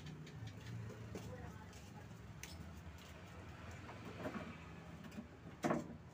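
Faint scattered clicks and scraping of a tool working inside a speaker's mic jack, prying at the broken-off tip of a mic plug stuck in it, with one louder short knock near the end.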